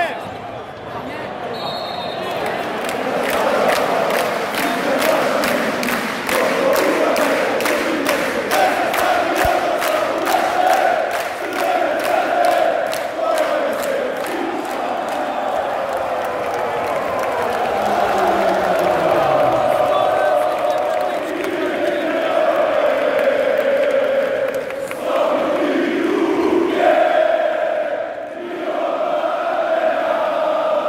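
Large arena crowd of basketball fans chanting and singing together, with a regular beat of claps through roughly the first half.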